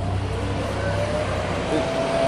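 Low rumble of a motor vehicle running on the street, dying away near the end, with a faint steady tone coming in about a second in.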